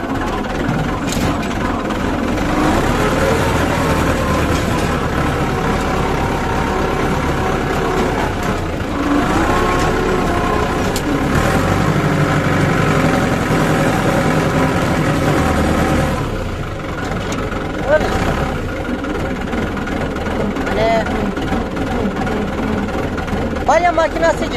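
Tractor engine running steadily under load, driving a straw baler through its PTO shaft. The sound grows louder about two seconds in and eases off a little about two-thirds of the way through.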